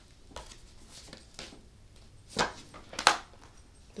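Tarot cards handled and shuffled by hand: a few sharp card snaps and taps. The two loudest come about two and a half and three seconds in, with soft handling noise between.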